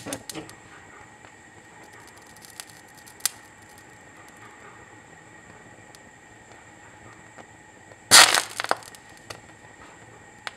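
Sodium azide heated on a metal spatula in a gas burner flame, decomposing violently into nitrogen gas and sodium metal with a short, loud burst of crackling pops about eight seconds in. A sharp click comes at the start and another about three seconds in, over a low steady background.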